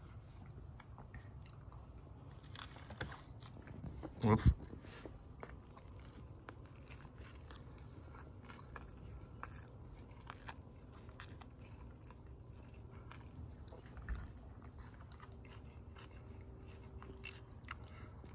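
A person chewing and biting into a soft flour-tortilla taco of ground beef, lettuce and tomato close to the microphone: soft wet clicks and small crunches throughout. There is a knock about four seconds in.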